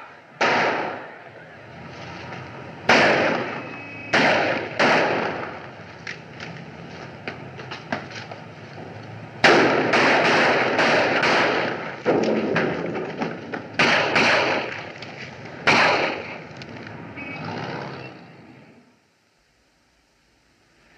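Gunfire on an old film soundtrack: a dozen or so gunshots at irregular intervals, each ringing out with a long echo, with a quick run of shots about ten seconds in. It dies away near the end.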